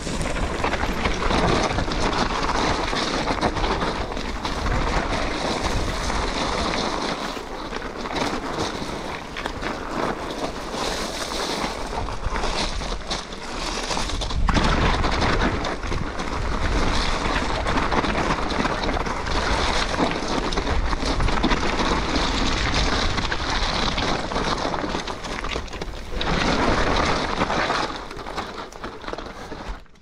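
Mountain bike descending a rough, wet trail, heard through an action camera's microphone: loud wind rush buffeting the mic, mixed with tyre noise and rattling over the bumpy ground.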